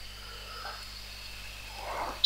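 Faint room tone: low steady hiss with a constant electrical hum, and no distinct sound event.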